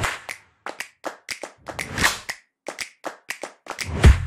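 Sound-effect sting for an animated logo: a quick, irregular run of sharp taps and clicks, with a short whoosh swelling about two seconds in.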